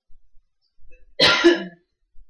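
A man gives one short cough, about a second and a quarter in.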